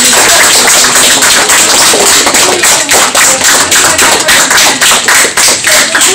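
Audience applauding: many hands clapping loudly and densely, thinning out to fewer, more separate claps near the end.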